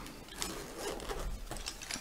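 Zip on a fabric pencil case being pulled open: a rough rasping run of the zip teeth, with a couple of small ticks as the case is handled and opened out.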